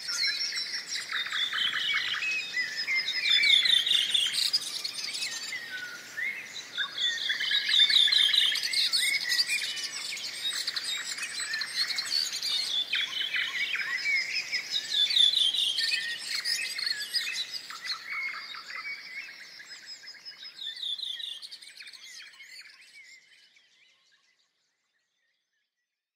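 Birdsong: several birds singing, a dense chorus of quick chirps and trills, fading out near the end.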